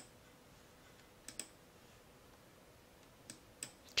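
A few sharp computer mouse clicks, sparse and irregular, two of them in quick succession, over a quiet room background.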